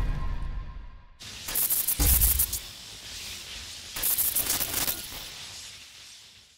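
Cinematic sting for an animated logo, all sound effects and no speech. A crash dies away over the first second. A sharp hit with a deep boom comes about two seconds in, then another burst of rapid noisy hits around four to five seconds, fading out at the end.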